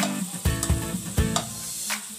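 Whole shrimp frying in oil in a coated pan, sizzling, while a slotted spatula stirs them and scrapes the pan now and then.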